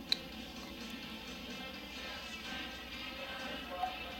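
Quiet background music with steady sustained tones, and one sharp click right near the start.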